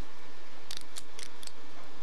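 A quick run of about five small, sharp plastic clicks from a LEGO minifigure being handled and its parts turned between the fingers, over a steady background hiss.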